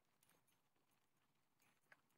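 Near silence, with a few faint taps.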